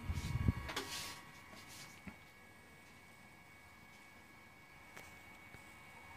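Brief handling noise on a workbench: a rustling clatter with a low bump in the first second, then a sharp click about two seconds in and a smaller one near the end, over a faint steady whine.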